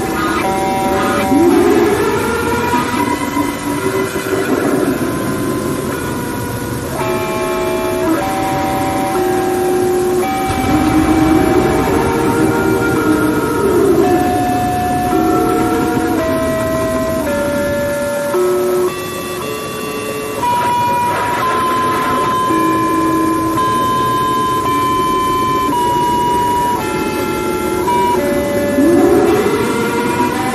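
Loud held horn-like tones that step from one pitch to another like a slow melody, with a swooping rise-and-fall sound recurring every few seconds.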